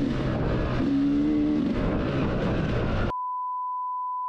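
Dirt bike engine running as the bike rides along a dirt trail, with rushing wind and ride noise. About three seconds in, the sound cuts off suddenly and a steady edited-in beep tone takes its place.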